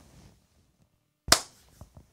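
A single sharp hand clap about a second and a half in, the loudest sound, followed by a couple of faint clicks.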